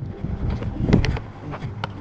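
Wind buffeting the microphone, with one sharp hand clap about a second in, the signal to throw, and a fainter click near the end.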